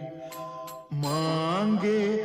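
Devotional Hindi song between sung lines. A held note ends, steady accompanying tones carry through a short gap, and a new melodic phrase begins about a second in, sliding upward.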